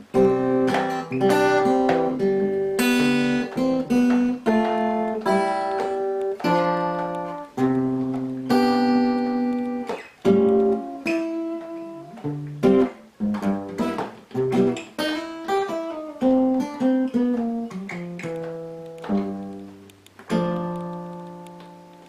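Solo acoustic guitar playing an instrumental introduction in picked single notes and chords at a moderate, steady pace, with no voice. It ends on a chord that rings out and fades away over the last couple of seconds.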